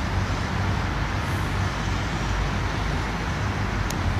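Steady street traffic noise with a constant low engine hum from passing or idling vehicles.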